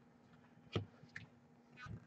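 Faint handling noise of baseball cards at a table: a sharp tap a little under a second in, a fainter click soon after, and a soft low thump near the end as the cards are set down.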